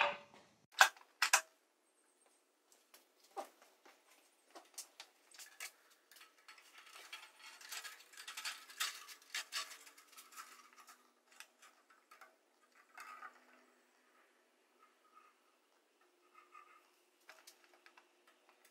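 Metal clicks and light clattering from the bandsaw's upper wheel and blade being handled and fitted back on by hand: a few sharp clicks in the first second and a half, then scattered quieter ticks and rubbing that thin out toward the end.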